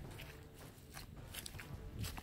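Footsteps on wet, muddy dirt: a few separate steps, more of them in the second half.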